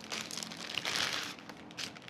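Thin clear plastic bag of pita breads crinkling as the pitas are handled and taken out of it, for about a second and a half, with one more short rustle near the end.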